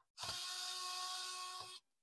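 Small red electric screwdriver running steadily for about a second and a half, backing out a screw from a laptop's bottom RAM access cover, then stopping shortly before the end.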